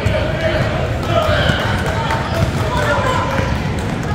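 Basketball being dribbled on a hardwood gym floor, with indistinct voices of players and spectators carrying through a large gym.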